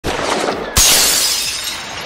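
Shattering sound effect for a logo animation. A noisy rush builds, then a sudden loud crash comes about three-quarters of a second in, followed by crumbling debris that slowly fades.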